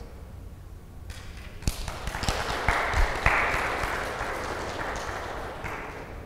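Audience applauding, starting about a second in, strongest around the middle with a few sharper claps, then thinning out toward the end.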